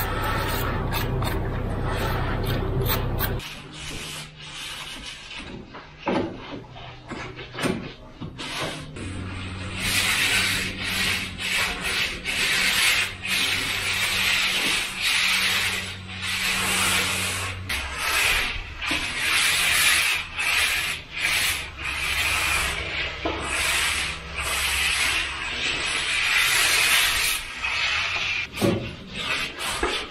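Hand trowel scraping across wet coloured concrete in repeated rasping strokes, each about a second long, while a worker finishes the surface from kneeboards. A steady low hum fills the first few seconds and stays faintly underneath.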